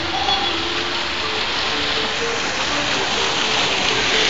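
Water from a fountain's jets splashing down into its basin, a steady rushing hiss like heavy rain.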